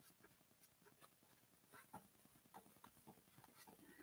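Near silence with faint, scattered soft ticks, coming more often near the end: a paint brush stroking acrylic paint onto paper.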